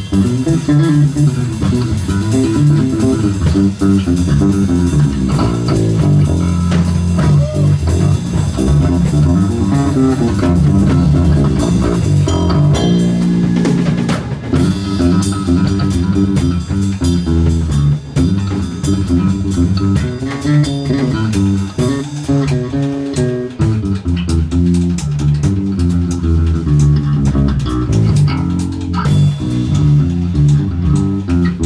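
Live blues band playing an instrumental passage: electric guitars, electric bass and drum kit.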